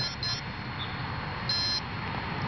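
Arming beeps from the RC helicopter's twin brushless motor system as it powers up: a couple of short high beeps just after the start and a longer beep about a second and a half in, the speed controllers signalling they have initialised.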